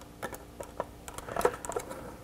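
Light, scattered clicks and taps of insulated spade connectors and wires being handled and pushed onto the terminals of a circuit breaker in a plastic control-panel enclosure.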